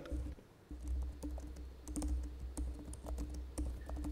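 Faint keyboard typing: scattered light clicks at an uneven pace, over a low steady hum that comes in just under a second in.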